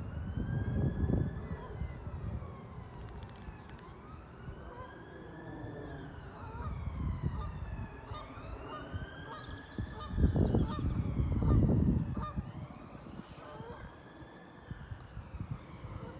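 Distant emergency-vehicle siren wailing, its pitch rising and falling in slow sweeps about every four seconds. Under it is a low rumble of wind on the microphone that is loudest about two-thirds of the way through.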